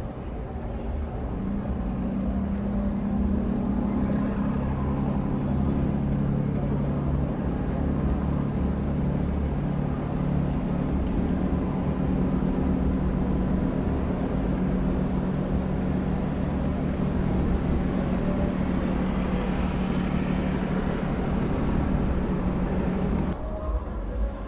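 Pilot boat's diesel engine running under power with a steady drone that grows louder over the first few seconds as the boat picks up speed, with rushing water from its bow wave.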